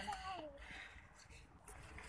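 A voice trails off faintly in the first half second, then near silence with only a faint hiss.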